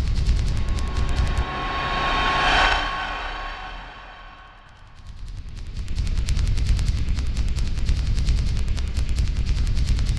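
Outro sound effect for a logo animation: a rapid run of crackling clicks with a shimmering whoosh that swells about two seconds in and fades. After that the fast crackle picks up again and carries on.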